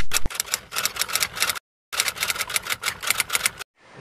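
Rapid typewriter-key clicking, as a typing sound effect. It comes in two runs of about a second and a half each, with a short silent break between them.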